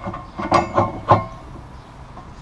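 A steel pallet fork being slid by hand along the carriage bar of a Worksaver SSPF-1242 skid-steer fork frame, with its latch up. There is a sharp metal clunk about half a second in and another about a second in, with scraping between them as the fork moves between notch positions.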